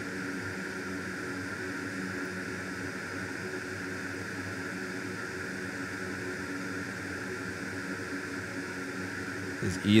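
A steady, even, fan-like hum and hiss of background machinery.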